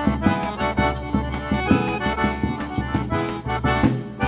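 Forró trio playing an instrumental passage: piano accordion carrying the melody over the steady rhythm of a zabumba bass drum and a triangle, with no singing.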